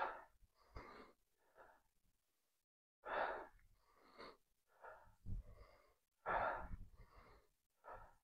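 A man's hard, rhythmic breathing during standing torso twists with a weight plate: a short breath roughly every second, in on each turn to the side and out on each return to the front. There is a pause of about a second near the two-second mark.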